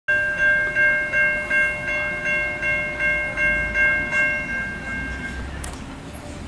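Railroad grade crossing bell ringing in an even beat of about three dings a second, then fading out and stopping about five seconds in.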